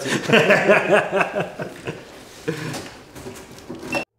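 Indistinct voices in a small room, cut off abruptly at the end.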